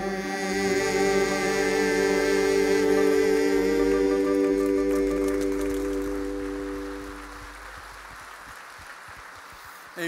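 Church worship band and singers holding the final sustained chord of a worship song, the voices wavering with vibrato. The chord fades out about seven seconds in.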